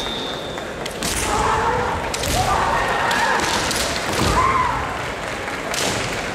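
Kendo bout: several sharp cracks of bamboo shinai striking each other and the fencers' armour, with thuds of stamping feet. Short, drawn-out kiai shouts rise and fall between the strikes.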